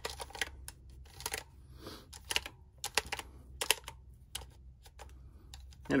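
A cloth rubbing over the plastic case and keypad of a Panasonic 850 calculator, with irregular clicks and taps as keys are pressed during the wiping.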